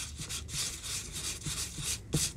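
Sanding the edge of a paper craft tag covered in collaged napkin: quick, even rasping strokes, about four or five a second.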